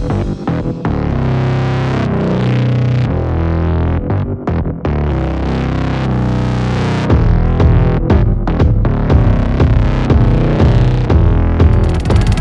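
Electronic dance music with a heavy bass line; a new track cuts in at the start.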